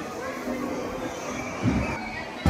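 Indoor hubbub: faint voices over a steady low rumble, with a low thump near the end.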